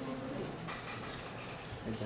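Steady fan hum and hiss of an overhead projector running in a lecture room.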